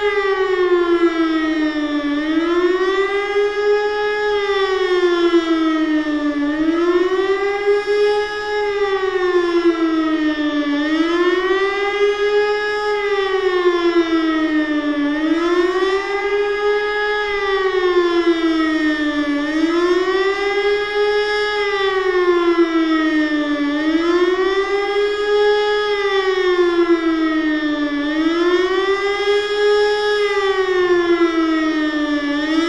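Motor siren wailing, its pitch rising and falling in smooth, even cycles about every four seconds.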